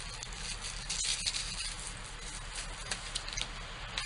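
Faint rustling and scattered light clicks of cosmetic products and packaging being handled.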